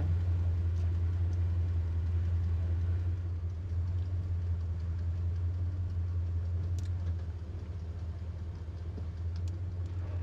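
Car engine running, heard inside the cabin as a steady low drone that eases off slightly about seven seconds in.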